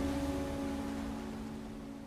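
The last piano chord of a sad, tender film score rings on and slowly fades away, with no new notes struck.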